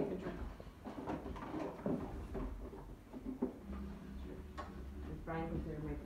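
Quiet background voices of people talking in a kitchen, with a few light clicks.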